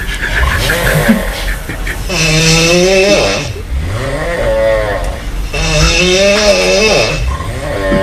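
A person's voice in long, wavering held tones, two of them about three and a half seconds apart, with breathier noisy sounds between them.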